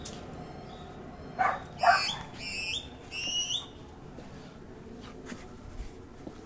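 Dog behind a fence barking twice, then giving three short, high-pitched whines that rise at the end.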